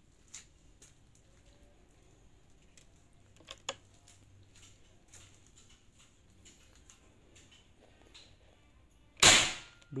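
One sharp shot from a Bocap Marauder Monolite 500cc PCP air rifle, set to high power, about nine seconds in, a loud crack with a short hiss tail. Before it there are a couple of faint clicks about three and a half seconds in, over a low steady background hum.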